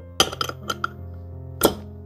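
Metal bottle opener clinking against the cap and neck of a glass Heineken beer bottle as it is opened: a quick run of light clinks, then one sharper clink near the end, with no audible cap pop. Background music plays underneath.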